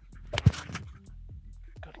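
A tactical slapjack struck at full power straight across a bare chest: one sharp slap about half a second in.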